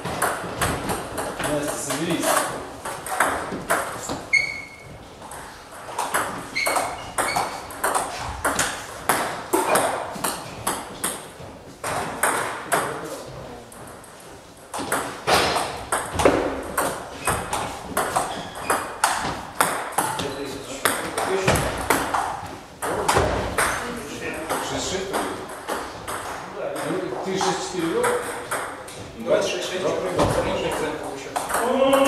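Table tennis rallies: the celluloid ball clicking in quick succession off the rubber-faced paddles and the table top, with a lull of a few seconds about halfway through before play resumes.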